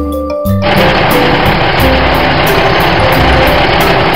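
Monster truck engine sound effect, a loud rough running engine noise that starts about half a second in, over cheerful children's background music with mallet notes.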